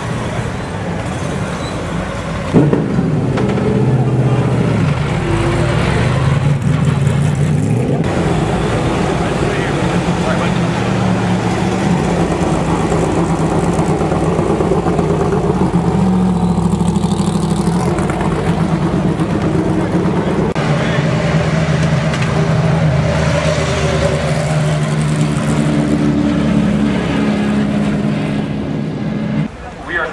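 Race car engines running at low speed as the cars pull slowly through the paddock: a deep, steady engine note that starts abruptly about two and a half seconds in and shifts a little in pitch. Among them is the Corvette C6.R GT car.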